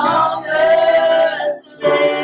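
Worship song: a woman sings a long held note over keyboard and acoustic guitar accompaniment, with a new chord coming in near the end.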